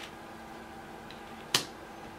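A single sharp, short snap about one and a half seconds in, with a softer click right at the start, over a faint steady room hum.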